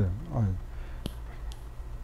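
A man says one short word, then pauses. Two small clicks, about half a second apart, sound over a low steady hum.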